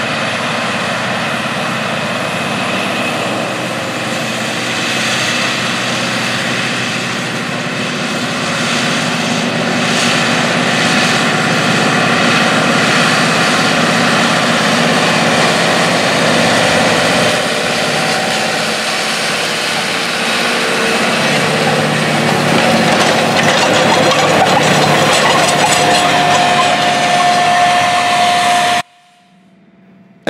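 John Deere 9620R four-wheel-drive tractor, with its Cummins 15-litre six-cylinder diesel, running steadily under load while pulling a wide air drill through stubble, along with the drill's rattle over the ground. The sound cuts off suddenly near the end.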